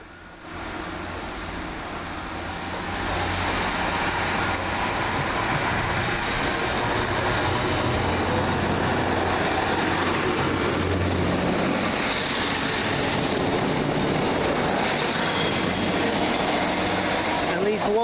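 Two coupled Class 153 diesel railcars pulling out and passing close by, their diesel engines running under power over the wheel and rail noise. The sound grows louder over the first few seconds and stays loud as the carriages go past.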